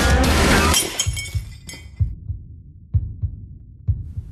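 Loud rock soundtrack music that stops about a second in on a shattering crash, its ringing dying away, followed by a low heartbeat-like sound effect pulsing about once a second.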